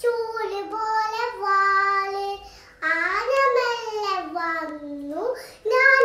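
A young girl singing a Malayalam children's song about an elephant in a high voice, without accompaniment, her pitch sliding up and down between phrases.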